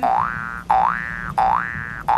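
An electronic pitched sound that glides upward and holds, three times in a row, each sweep about two thirds of a second long with a short break between.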